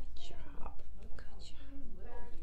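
A person whispering softly, with breathy hissing sounds in short bursts over a steady low hum.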